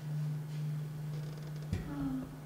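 A steady low hum, one unchanging pitch, with a single low thump near the end.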